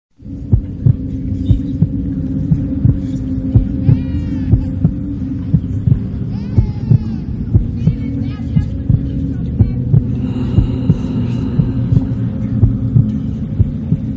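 Low droning hum with a pulsing thump about twice a second, like a heartbeat effect laid under the edit, and a few brief high gliding tones in the middle.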